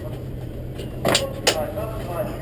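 Race car engine idling low and steady, with two sharp knocks about a second in.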